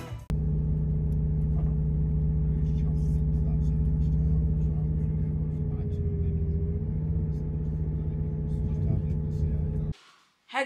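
Moving passenger train heard from inside the carriage: a steady rumble with a constant low drone.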